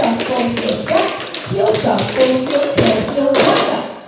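Several dancers' tap shoes striking the studio floor in quick, uneven runs of taps as a group runs through a tap combination.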